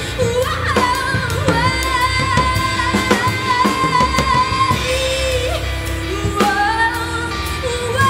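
Female lead singer with a live band, holding one long high note for about four seconds, then singing a lower phrase that climbs again near the end, over a steady drum beat.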